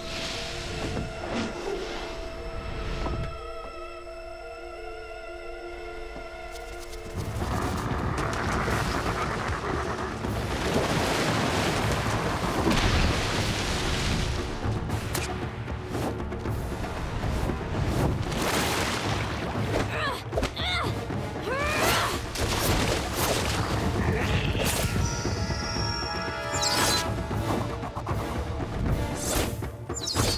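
Animated fight-scene soundtrack. Sustained score notes fill the first seven seconds, then the music turns louder and busier, mixed with booms and hit sound effects.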